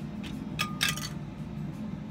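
A few sharp clicks and a light clink about half a second in, as an N scale model freight car is set down on the platform of a digital kitchen scale, over a low steady hum.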